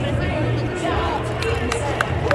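Music over a ballpark's public-address system, echoing across the stadium, with crowd chatter and voices underneath.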